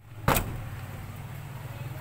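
A single sharp click just after the start, then a steady low hum of a running motor vehicle engine.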